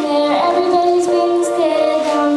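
A young girl singing through a microphone, holding long sustained notes, with keyboard accompaniment.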